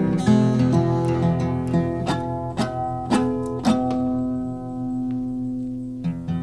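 Background music: acoustic guitar picked and strummed, with a few strummed chords in the middle, then one chord left ringing and fading over the last two seconds.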